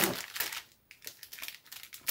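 Clear plastic kit bag holding the sprues crinkling as hands handle it: a burst of crackling at the start, a brief lull a little before one second in, then lighter crinkles.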